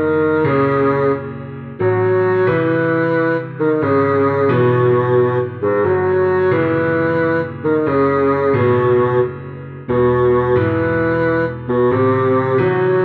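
Bassoon melody played at half speed over a backing track with bass and chords, moving in short phrases with brief gaps between them.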